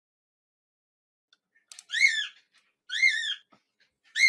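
Two short, high-pitched whistle-like calls about a second apart, each rising and then falling in pitch.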